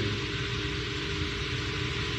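Steady low hum and hiss of room noise picked up by the microphone, with no speech.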